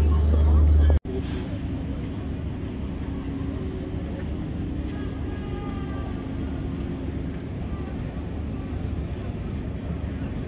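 Electric passenger train running over a brick railway viaduct: a steady rumble with a low hum. Before it, a loud low outdoor rumble in the first second stops abruptly.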